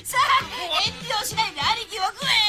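A cartoon character's voice speaking excitedly in Japanese over background music.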